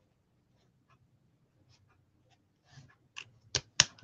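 Faint scratching of a Stampin' Blends alcohol marker colouring on cardstock, then a few sharp clicks near the end as the marker is handled and set down.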